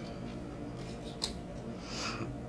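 A tarot card being laid down on the table: a single short tap a little past halfway, then a soft brushing sound near the end as it is slid into place, over a faint steady hum.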